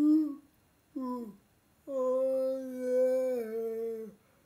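A man's voice singing unaccompanied: two short notes, then a long held note from about two seconds in that steps down slightly before it ends.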